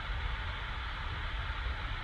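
Steady background hiss with a low hum underneath, the room tone of a home recording setup between spoken phrases.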